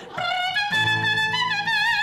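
A trumpet playing one held note that steps up in pitch a few times and ends with a wavering vibrato.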